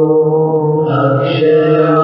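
Hindu devotional chanting sung to music, with a voice holding long, steady notes and a brighter, higher layer joining about a second in.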